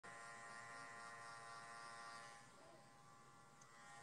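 Near silence with a faint, steady electrical hum or buzz made of several held tones, easing slightly about halfway through.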